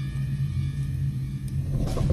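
A low, steady rumbling drone from the documentary's soundtrack, with little higher sound above it.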